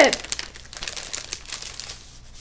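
Clear plastic sticker bag crinkling as it is opened and handled: a quick, irregular run of small crackles that thins out near the end.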